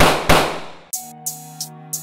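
Two gunshot sound effects in quick succession, each ringing off; about a second in a hip-hop beat starts, with hi-hat ticks over held notes.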